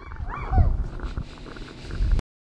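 A short roaring cry, its pitch rising and falling, over heavy low rumble and knocks from the camera and microphone being jostled.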